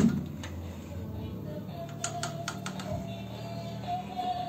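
A few light clicks and knocks as the handle of a sliding door is worked and the door is slid open. Beneath them a faint steady high tone sets in midway.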